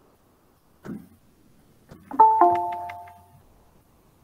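A two-note descending chime, a higher note followed a fraction of a second later by a lower one, both ringing on and fading over about a second, typical of a doorbell or an app notification chime. A brief faint sound comes about a second before it.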